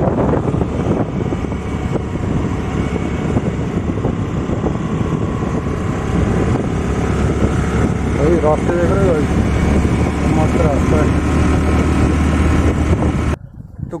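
Motor scooter engine running steadily while riding, with wind buffeting the phone's microphone. The sound cuts off abruptly just before the end.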